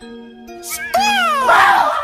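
A shrill wailing scream that rises and then slides down in pitch, turning into a loud harsh shriek about a second and a half in, over background music of held notes.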